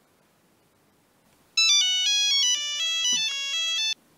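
Mobile phone ringtone: a quick electronic tune of stepped notes starting about a second and a half in, cutting off suddenly just before the end when the call is answered.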